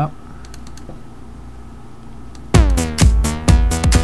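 A few clicks over a low hum, then about two and a half seconds in, a Thor synthesizer patch in Reason 4 starts playing over a drum beat: buzzy notes that each drop in pitch as they start, over a kick drum.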